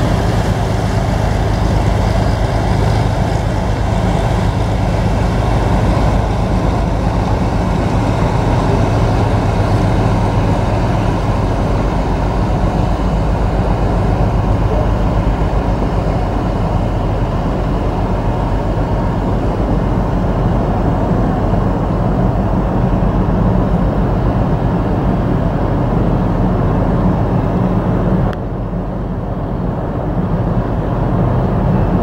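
Steady low drone of ships' engines running, with a broad rush of noise over it; the level drops suddenly about two seconds before the end.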